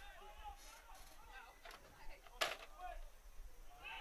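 Faint open-field sound of a soccer match: distant players' voices calling out, with one sharp knock about two and a half seconds in.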